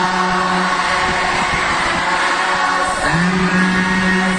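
Large group of Cambodian Buddhist monks chanting together on one steady held pitch; the held note drops out about a second in and returns near the end.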